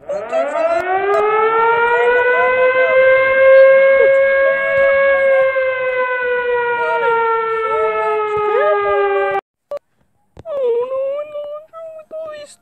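Siren-like wail: a pitched tone winds up over about two seconds, holds, sags slowly in pitch, and cuts off abruptly about nine seconds in. A short wavering voice-like call follows near the end.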